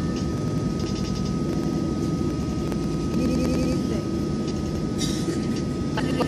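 Steady low rumble of jet airliner cabin noise as the plane rolls along the runway after landing, heard from inside the cabin, with a thin steady whine running through it.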